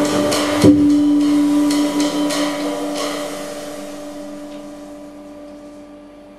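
Free-jazz band ending a piece: drums and cymbals with a final loud accent about half a second in, then a single held note and cymbals ringing out and fading away over the following seconds.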